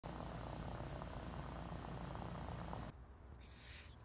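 A pot of eggs in water at the boil, bubbling with a steady low rumble that cuts off about three seconds in.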